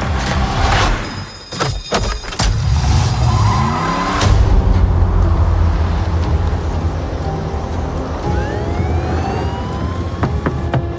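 Cinematic trailer sound design and score: a few sharp hits, then a deep, loud, sustained low drone with rising tones building near the end.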